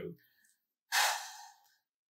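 A person's single audible sigh: one breathy out-breath about a second in, fading away over under a second.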